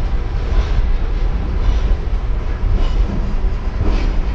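Freight train of boxcars rolling past close by: a steady rumble and rattle of steel wheels on the rail, with a sharp knock near the end.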